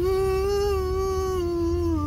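A man's voice singing one long held note that wavers slightly and slides down in pitch near the end, over the low rumble of a car cabin on the move.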